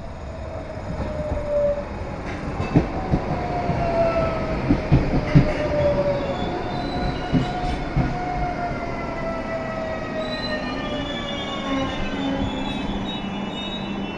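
Tren de la Costa electric train pulling into a station and braking to a stop. It grows louder as it nears, its wheels knock sharply several times over rail joints, and a whine slowly falls in pitch as the train slows.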